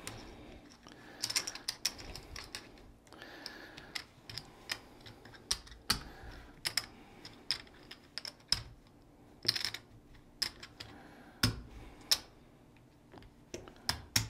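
Casino chips clicking as they are stacked and set down on a felt craps layout while bets are placed across the numbers. The clicks come irregularly, one or two a second.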